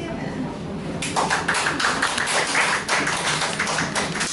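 A small audience clapping, starting about a second in and going on as a quick, irregular patter.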